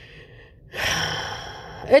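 A woman's deep audible breath: a sharp, breathy intake starting a little under a second in and tapering off over about a second, with a faint hiss of breath before it.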